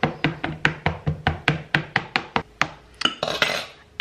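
A fork pricking raw shortcrust pastry in a metal tart pan: quick, even clicks of the tines through the dough against the tin, about six a second, stopping a little under three seconds in. A brief clatter follows as the fork is set down.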